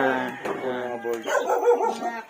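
A dog barking, mixed with a man's voice.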